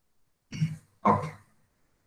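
A man clears his throat once, briefly, about half a second in, then says "okay".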